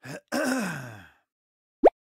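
A man's voice gives a quick breath and then a groan-like wordless exclamation, about a second long, sliding down in pitch. Near the end a short rising-pitch pop sound effect.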